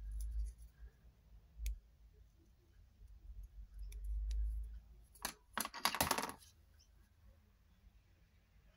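Scissors snipping paper in a few sharp clicks, with handling thumps on the table. About five seconds in comes the loudest part: a short clatter of several quick knocks as things are set down and picked up on the cutting mat.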